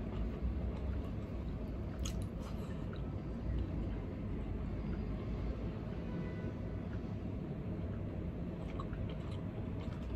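A person chewing food with their mouth full, with a few faint clicks of fingers on a plate, over a steady low hum.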